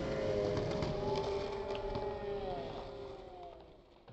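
Skateboard wheels rolling on asphalt after a landing, a low rumble under a steady, slightly wavering droning tone. Both fade out near the end.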